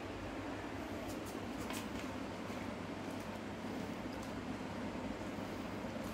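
Steady low background hum with a few faint crackles, about two seconds in, from a hand working puffed rice in a steel bowl.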